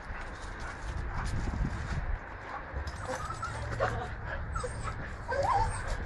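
A dog whimpering in a few short, high whines, eager at the nearby ducks and chickens.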